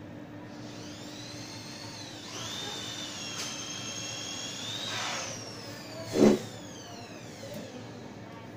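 A small electric motor whines as it spins up, runs steadily for a few seconds, then winds down with falling pitch. A sharp knock comes about six seconds in, louder than the whine.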